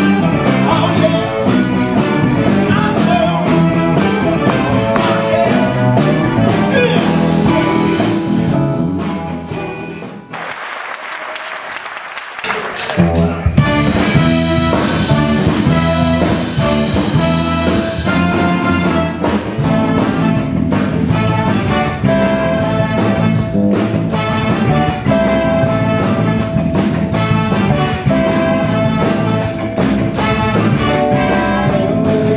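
Live rock band with electric guitar, drums and a horn section playing loudly. About ten seconds in the music breaks off for a few seconds of applause, then the band comes back in with saxophone and trumpet.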